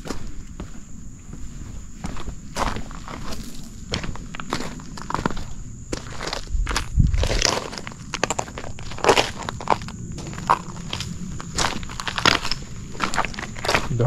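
Footsteps on the loose stones and gravel of a dry creek bed, irregular steps about once or twice a second, with a single low thump about seven seconds in.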